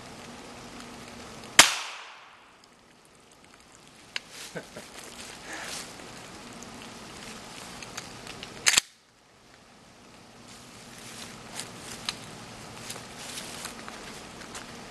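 A single sharp crack about a second and a half in: a .50 BMG cartridge fired on its primer alone, with no powder, which still drives the bullet out hard enough to pierce a water bottle. A second, shorter sharp knock comes near the middle, with light clicks and rustling between.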